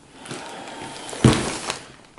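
Fabric rustling close to the microphone as a cloth drawstring bag is handled, with one sharp thump a little over a second in.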